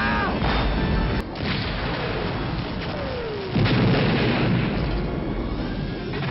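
Movie battle sound effects over orchestral score: a pilot's short scream at the very start, then cannon blasts and explosions. A falling whine about three seconds in leads into the loudest boom, the crash of a shot-down snowspeeder.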